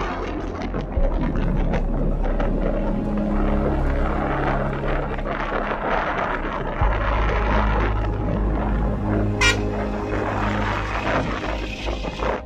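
Outdoor rumbling noise, with soft background music running underneath as sustained low notes that change every few seconds. A brief high-pitched sound comes about nine and a half seconds in.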